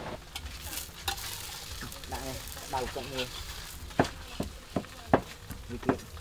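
Banh chao (Khmer crepe) batter sizzling in open pans over charcoal stoves, a steady hiss, with several sharp clinks in the second half.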